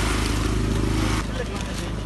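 An engine running steadily under a crowd's voices; the engine noise drops away abruptly just over a second in, leaving the crowd voices.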